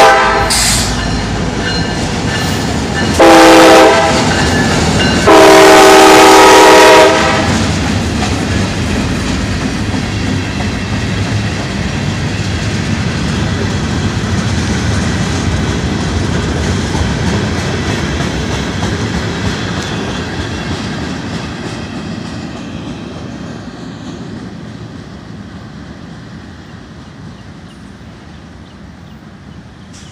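Diesel locomotive 508's air horn sounding: a blast ending just as the sound begins, a short blast about three seconds in and a long blast about five seconds in. Then the freight cars roll past with wheel clatter and rumble, fading steadily through the second half.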